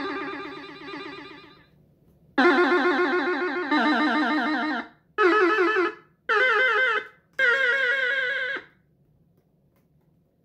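1978 Castle Toys Superstar 3000 battery-powered toy electronic guitar playing notes through its built-in speaker. Buzzy electronic notes with a fast wobble in pitch: one note dies away, then a short phrase of five held notes, about a second each.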